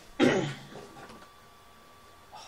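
A man clears his throat once, a short loud burst about a quarter second in, followed by a few quiet small noises.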